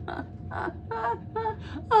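A woman laughing hard in short, breathy bursts, several a second, over a low steady room hum.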